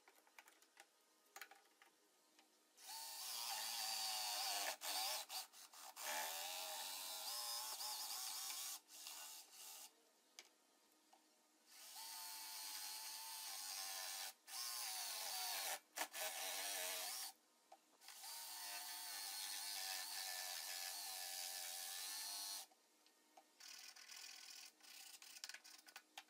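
Electric jigsaw cutting a curved corner in a wooden board, running in several stretches of a few seconds with short stops between. A few light clicks from a quick-release bar clamp being tightened come before the saw starts.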